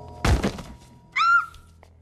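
Film sound effect of a heavy thud a quarter-second in, a body hitting the floor after a frying-pan blow. About a second later comes a short, high-pitched voice sound that rises and then holds.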